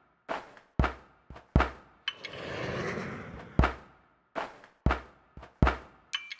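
Percussive soundtrack of deep thumps and knocks on a loose beat, about nine hits in six seconds. A whoosh swells and fades between two and three and a half seconds in.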